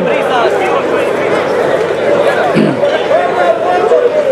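A crowd of spectators talking and calling out over one another, many voices at once.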